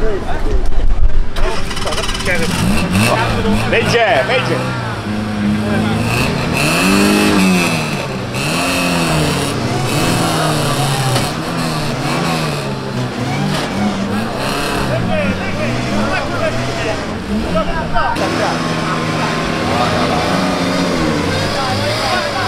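Fiat Panda 4x4's small petrol engine revving up and down over and over, rising and falling every second or so, as the car struggles in deep mud while being pulled out on a tow strap. Voices are heard over it.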